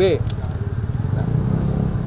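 Steady low rumble of motor-vehicle engines, swelling a little in the second half, after a short spoken syllable at the start.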